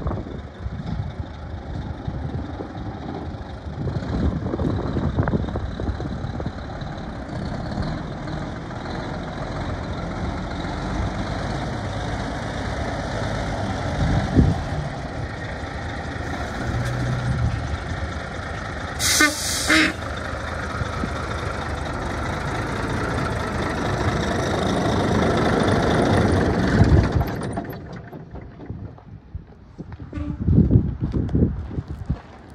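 Mack semi tractor's diesel engine running as the truck drives across gravel and pulls up close. About two-thirds through there is a short air-brake hiss, and the engine sound grows louder before easing off near the end.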